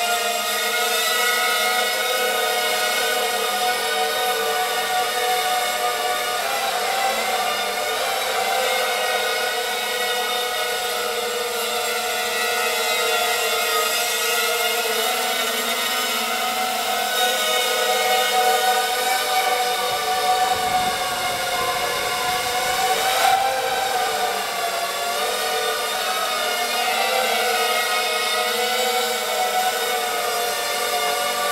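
Emax MT2204 2300KV brushless motors spinning Gemfan 5x3 three-blade props on a 250-size FPV racing quadcopter in flight: a steady many-toned whine that wavers in pitch with the throttle, with a brief surge about 23 seconds in.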